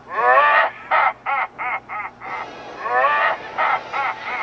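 A cartoon man's voice letting out a cackling, screaming laugh. It comes in bursts: one long, wavering cry, then a quick run of short bursts about four a second, then another long cry.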